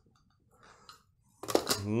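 Near quiet with a faint, brief handling noise, then a man's voice begins speaking near the end. The coffee grinder is not yet running.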